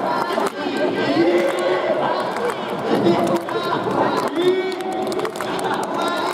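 Talk over the stadium's loudspeakers, mixed with chatter from the crowd in the stands.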